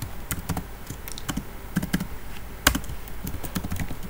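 Typing on a computer keyboard: a quick, irregular run of key clicks, with one sharper, louder keystroke about two-thirds of the way through.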